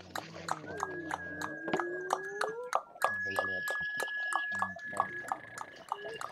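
Several people making odd mouth noises together over an online voice chat: a long held whistle that breaks once near the middle, a run of sharp clicks, and sliding voiced hoots and animal-like calls.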